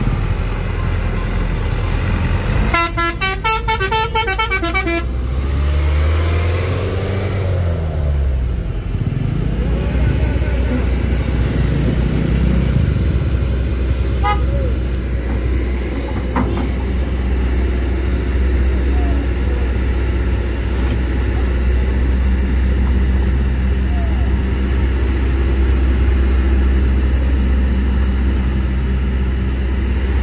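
A vehicle horn sounds for about two seconds a few seconds in, a fast-pulsing note with several tones. It sounds over the low, steady running of vehicle engines on a steep climb, with an engine revving up and down soon after.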